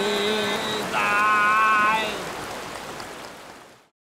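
River water rushing and splashing around a man bathing, with his voice calling out twice, drawn out, in the first two seconds. The whole sound fades away to silence near the end.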